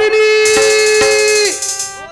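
One long held note, steady in pitch and bright with overtones, breaking off about a second and a half in.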